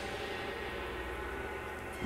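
A low, steady rumbling drone from a film trailer's soundtrack, with faint sustained tones above it.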